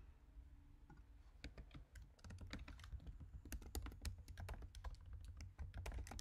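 Faint typing on a computer keyboard: quick runs of key clicks, starting about a second and a half in.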